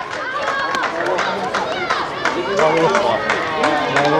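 Many voices at once, people talking and calling out over each other in open-air chatter, with a few short sharp knocks or claps among them.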